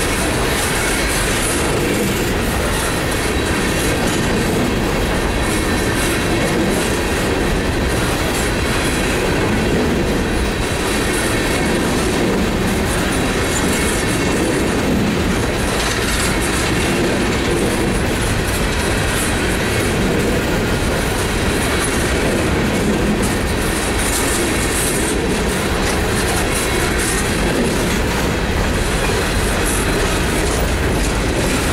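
Hopper cars of a loaded coal train rolling steadily past close by: continuous noise of steel wheels on rail, with a faint thin squeal from the wheels.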